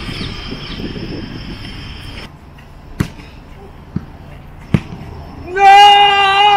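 Sharp thuds of a football being struck: two clear ones about a second and three-quarters apart, with a fainter one between. Then a loud, drawn-out shout near the end. A steady hiss stops abruptly about two seconds in.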